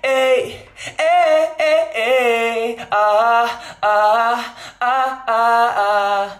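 A recorded male singing voice played back unaccompanied, in short sung phrases of about a second each: a freshly recorded vocal take for a song's drop, heard before processing.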